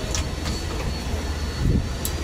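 Steady low mechanical rumble with a faint high whine over it, a short click just after the start and a soft low thump near the end.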